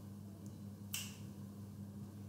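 A single sharp click about a second in, over a faint, steady low hum.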